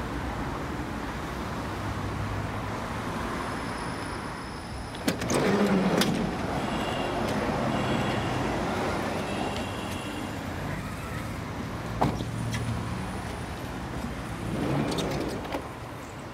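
Road traffic passing on a street, with a minibus pulling up and a few sharp knocks of its doors about five, six and twelve seconds in.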